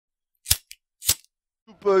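Two sharp clicks about half a second apart, with silence around them, then a man begins speaking in French near the end.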